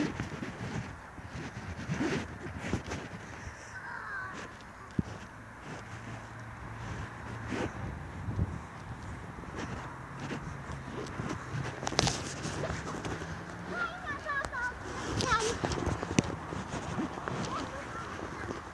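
Footsteps on a sandy path scattered with twigs, with small birds chirping briefly about four seconds in and again in a cluster near the end.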